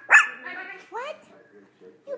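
Small puppy barking twice, a loud high yappy bark right at the start and a quieter, shorter one about a second later. It is attention-seeking barking, which the owner takes as the puppy wanting to be picked up onto the couch.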